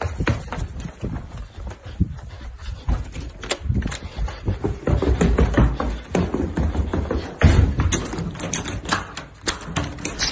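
A busy jumble of irregular knocks, thumps and rustling from a handheld phone being jostled while its holder moves about quickly. The knocks come in quick, uneven runs and grow louder about halfway through.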